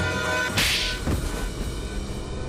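Tense TV-drama background music whose held tones break off as a sharp whoosh sound effect hits about half a second in; quieter music carries on after.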